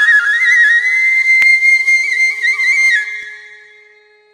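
Background music: a solo flute melody with quick ornamented steps between notes over a faint steady drone, fading out near the end.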